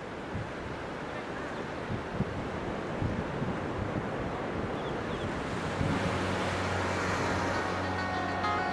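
Ocean surf, a steady rush of breaking waves fading in and growing. About six seconds in, low held musical notes start underneath.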